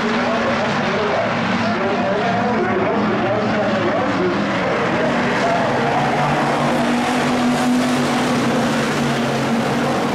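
A field of IMCA Hobby Stock cars' V8 engines racing together on a dirt oval, a loud, steady drone of many engines whose pitches waver as drivers get on and off the throttle.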